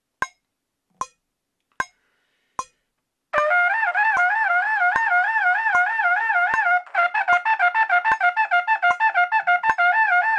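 Metronome clicks, about 77 a minute. A little over three seconds in, a trumpet joins with a rapid fingering drill in five-note groups, flicking back and forth between close notes. The notes are slurred smoothly at first, then tongued one by one from about seven seconds in.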